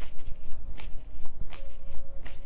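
A deck of tarot cards being shuffled by hand: an uneven run of quick card flicks and snaps.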